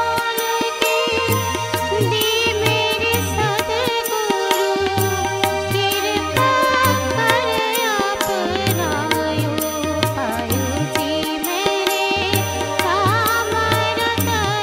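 A woman singing a wavering, ornamented melody over steady held keyboard tones, with tabla keeping a regular beat underneath.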